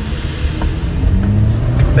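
Background music over the hum of the Jeep's engine and road noise inside the moving car, the engine note rising slowly as it accelerates.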